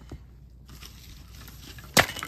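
Faint rustling and light ticks from haul items being handled, then a single sharp knock just before the end, the loudest sound.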